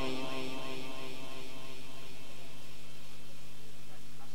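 Steady low electrical hum with light hiss from a public-address loudspeaker system. Over the first second, the echoing tail of a man's chanted Quran recitation dies away.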